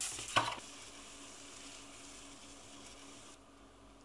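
A sheet of paper handled on a tabletop: two crisp rustles in the first half-second, then a faint steady hiss.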